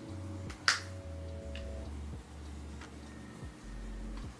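A single sharp click a little under a second in, then a few fainter ticks, from makeup being handled as bronzer is taken up and brushed on, over a faint low hum.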